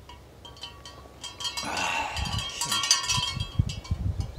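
Chime-like metallic ringing, several steady tones sounding together, swelling about halfway through and fading near the end. Gusts of wind rumble on the microphone from the middle on.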